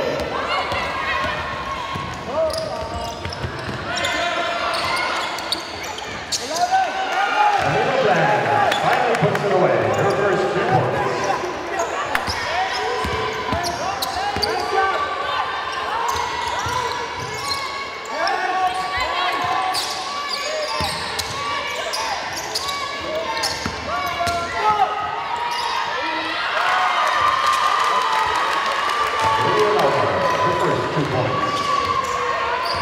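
Live basketball game sounds in a sports hall: the ball bouncing on the court with sharp knocks, under scattered calls and chatter from players and spectators.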